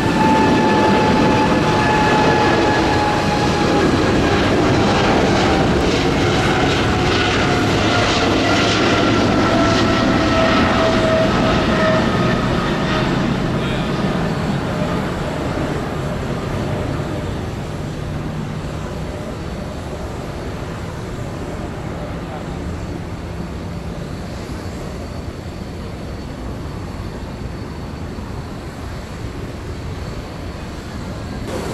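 Boeing 777-300ER's twin GE90 turbofan engines at takeoff thrust: a loud jet roar with a fan whine that slowly falls in pitch as the airliner rolls past and lifts off, then the sound fades as it climbs away over the second half.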